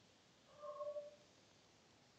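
Near silence broken by one faint, short animal call, about half a second long, a little after the start.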